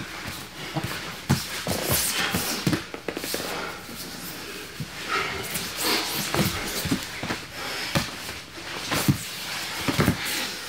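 Two grapplers rolling on foam mats: irregular knocks and scuffs of bodies, hands and feet against the mat, with hard breathing. The sharpest knocks come about a second in, around two seconds in and near the end.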